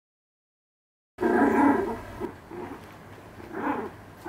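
A small dog vocalising while it plays with a toy. The sound starts suddenly about a second in and is loudest at first, with a second short call near the end.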